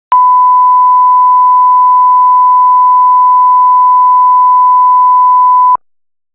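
Broadcast line-up test tone played with colour bars: a single loud, steady 1 kHz beep that switches on with a click and cuts off suddenly near the end. It is the reference tone for setting audio levels at the head of a broadcast tape.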